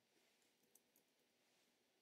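Near silence, with a few faint clicks about three-quarters of a second to a second in.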